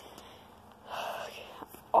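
A person's short breathy whisper, about half a second long, about a second in, against low background.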